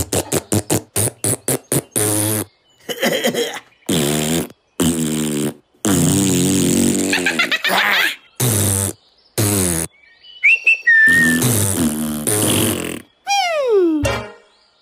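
Cartoon sound effects: a run of short, buzzy, raspberry-like noises in separate bursts, starting with quick pulses at about six a second, then a wavering high tone and a long falling glide near the end.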